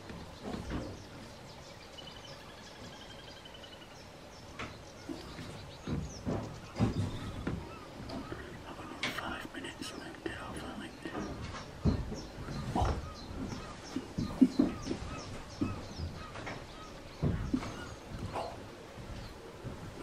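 Quiet outdoor ambience with a faint bird trill a couple of seconds in, followed by low, indistinct voices and occasional bumps on the microphone.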